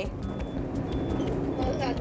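Steady rumble and hiss of a train running, heard from inside the carriage, with a voice starting faintly near the end.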